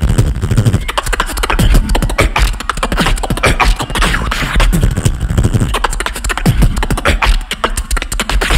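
Human beatboxing through a stage microphone and PA: a fast, dense run of deep bass kicks, snares and sharp clicks made with the mouth.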